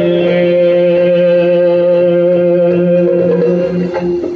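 Yakshagana vocal music: the bhagavata holds one long sung note over a steady drone, and the note dies away just before the end.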